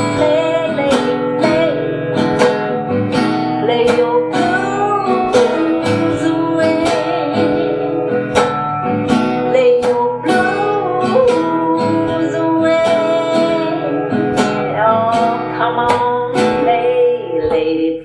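Acoustic guitar strummed in a steady rhythm, about two strums a second, with a woman's voice singing along without clear words. The playing stops just before the end.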